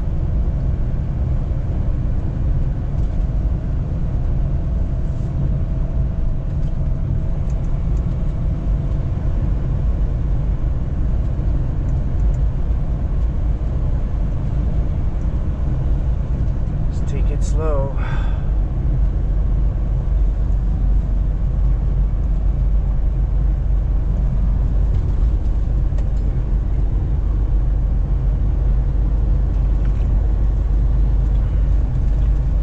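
Semi-truck's engine and tyres running in a steady low rumble, heard from inside the cab while cruising on a snow-covered highway. About seventeen seconds in, a brief wavering, squeak-like pitched sound with a few clicks cuts through.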